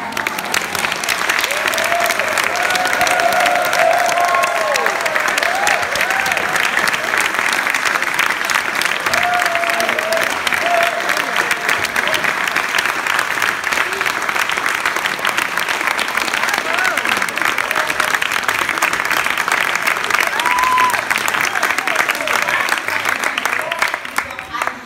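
Audience applauding steadily for over twenty seconds, with a few voices calling out over the clapping in the first seconds and again briefly later; the applause stops abruptly at the end.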